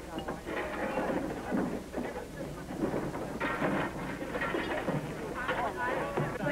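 Men shouting and yelling over scuffling noise in a slapstick brawl, on an early-1930s film soundtrack with a steady low hum.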